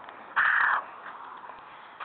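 A crow giving one harsh, raspy caw, about half a second long.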